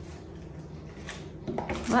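A few faint clicks and light handling noise of small diamond-painting tools on a tabletop, just after they have been tipped out of their bag.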